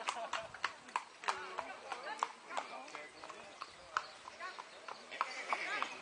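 Hoofbeats of a pair of ponies trotting with a carriage, heard as a run of irregular sharp clicks a few tenths of a second apart, with people talking in the background.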